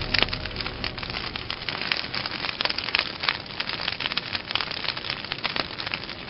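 Destruction sound effect of buildings breaking apart: dense crackling and clattering of falling debris, packed with sharp clicks.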